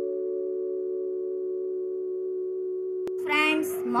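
Intro jingle: a held, ringing chord of chime-like mallet notes that sustains at a steady level. A sharp click comes just after three seconds, and then new background music with a woman's voice begins near the end.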